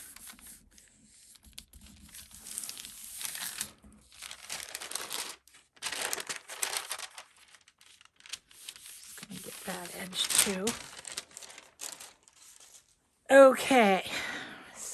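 A sheet of thin paper rustling and crinkling in bursts as it is pressed down by hand over cards and then lifted and peeled off. A woman's voice is heard briefly, loudest right at the end.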